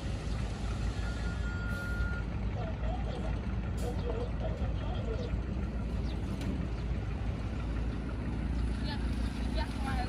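Small dump truck's engine running steadily while its tipper bed is raised to unload soil, with faint voices in the background. A short steady beep sounds about a second in.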